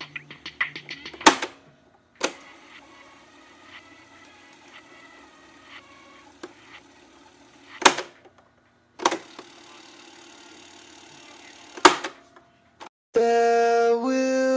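Mechanical clicks of a cassette player's buttons, five loud ones spread over the stretch. Between them run faint, muffled tape sound and a steady hiss. Near the end, music with keyboard chords starts up.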